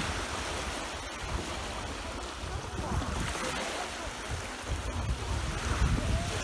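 Small waves breaking and washing up the shore, swelling about every three seconds, with wind on the microphone.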